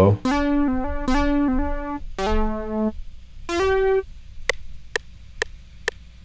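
Synth lead notes from Spectrasonics Omnisphere played as slurs: a note repeating quickly, then a lower note that slides into pitch and a short higher note. A few faint clicks near the end.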